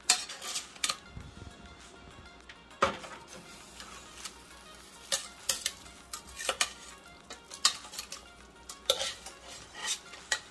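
Metal tongs clinking and scraping against a metal pot while turning chicken pieces in thick jerk marinade, with irregular sharp clinks every second or so.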